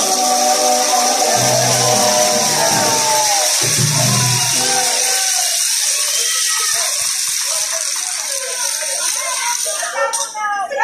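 Live marinera limeña music played by a band with singing and guitar, the sung lines thinning out after about five seconds, over a steady high hiss.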